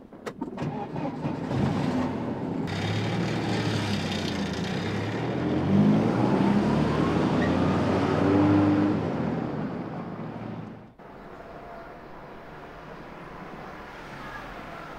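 SUV engine running as the car pulls away, its sound rising in pitch as it accelerates and then fading. It cuts off suddenly about eleven seconds in, leaving a low steady hum.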